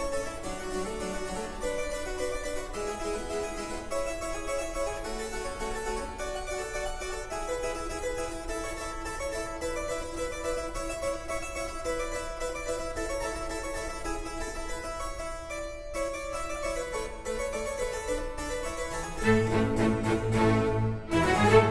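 Harpsichord playing a solo passage of quick, running notes in a Baroque concerto. About a second before the end the string ensemble comes back in with fuller low notes and the music grows louder.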